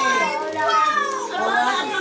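Several voices, children's among them, talking and exclaiming over one another in excited chatter.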